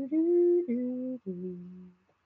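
A person humming a short tune of three held notes, the last one lower and trailing off.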